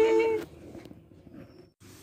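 A baby's voice: a short, held coo that stops about half a second in, followed by faint room sound.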